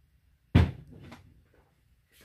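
A single sharp thump about half a second in, like something hard set down or knocked, followed by a fainter click about half a second later.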